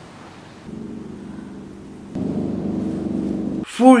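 A low, steady drone of several held tones from the film's soundtrack, coming in under a second in, swelling louder about halfway through and cutting off abruptly near the end.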